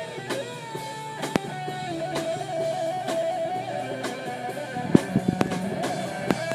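Live rock band playing: electric guitar, bass guitar and drum kit, with long held notes over scattered drum hits.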